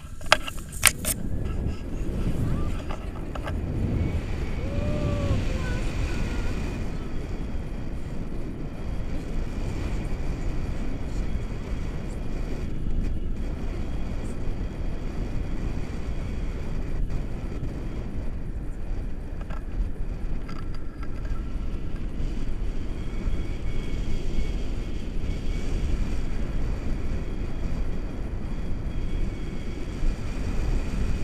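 Wind rushing over the microphone of a pole-mounted action camera on a tandem paraglider in flight, a steady low rumble. A few sharp knocks come in the first second, around takeoff.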